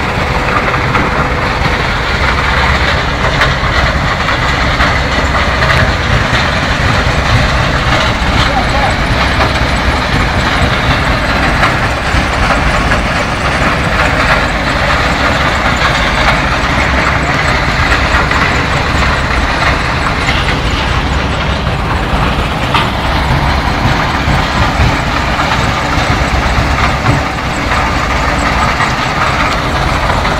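Dewatering vibrating screens running under load, shaken by twin vibration motors: a loud, steady mechanical din with a heavy low rumble that carries on without a break.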